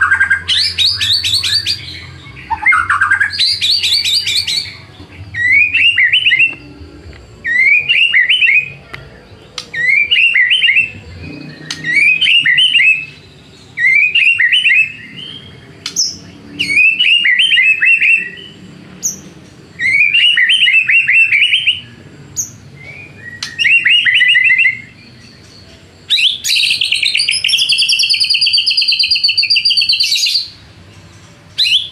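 White-rumped shama (murai batu) singing loudly in short, repeated phrases about every two seconds. It opens with fast, high trills and ends with a longer, rattling phrase near the end.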